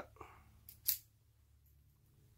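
Plastic packaging on a lipstick tube being bitten and torn off with the teeth: a small click and then one brief sharp crack of plastic about a second in.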